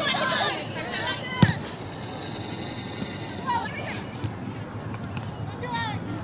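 Shouts from players and sideline voices during a soccer match, with one sharp thump of a soccer ball being kicked about a second and a half in.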